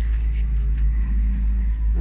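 A steady low rumble that keeps up evenly throughout.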